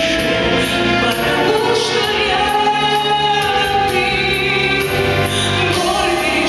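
A woman singing a song into a microphone over instrumental accompaniment with a steady beat, holding long notes.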